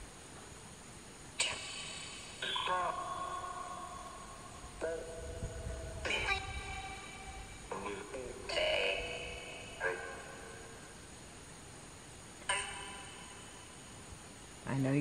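Ghost-hunting spirit box giving out about eight short, echoing, voice-like fragments. Each one starts abruptly and rings out.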